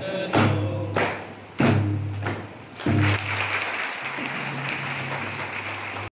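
A group sings, keeping a beat of hand claps with a low drum stroke about every 0.6 s. About halfway through the beat stops and steady, continuous clapping takes over.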